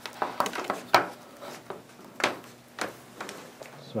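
A handful of sharp clicks and knocks from a plastic laptop-style power adapter brick and its cords being handled, plugged in at the wall and set down on a wooden desk. The loudest click comes about a second in.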